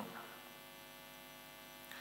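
A chanted male voice cuts off right at the start, leaving a faint, steady electrical hum from the microphone and amplifier system in the pause.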